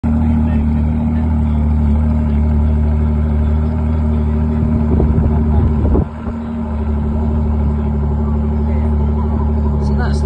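Ford sports car engine idling with a steady low rumble, surging louder about five seconds in and dropping back sharply at six seconds.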